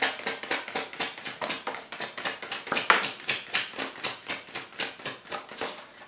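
A deck of tarot cards being shuffled in the hands: a fast, even run of light card slaps, about seven a second, trailing off near the end.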